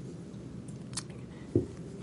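A quiet pause with low room tone, broken by one short, sharp click about halfway through and a brief low vocal sound near the end.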